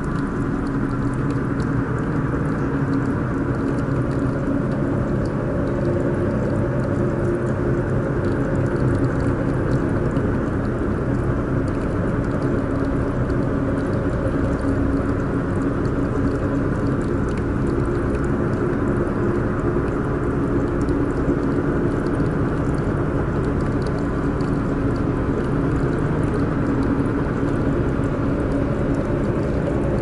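Ambient background music: a steady low drone with a few held tones, unchanging in level.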